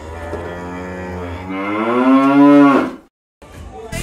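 A cow's single long moo, rising in pitch and growing louder toward the end, then cutting off abruptly about three seconds in.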